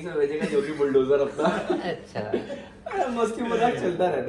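A group of men laughing and chuckling among bits of talk.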